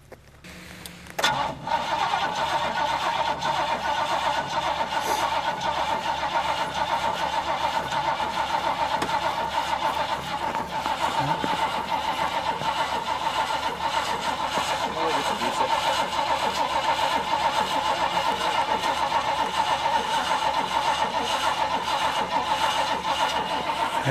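The bucket truck's engine, started on jumper cables after its dead battery has taken a charge, cranks briefly and catches about a second in, then runs steadily with an even pulse and a high whine.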